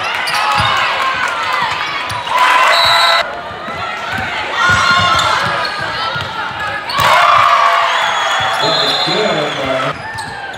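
Basketball being dribbled on a hardwood gym floor in regular low thuds, under spectators shouting and cheering.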